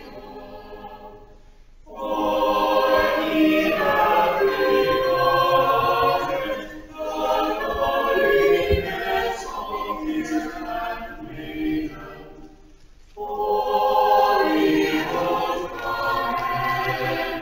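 Church choir singing, a quiet phrase giving way to a fuller, louder one about two seconds in, with a brief breath near thirteen seconds before the next phrase.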